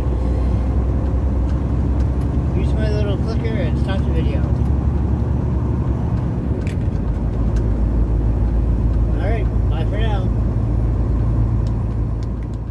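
Semi-truck driving on the highway, heard from inside the cab: a loud, steady low rumble of engine and road noise.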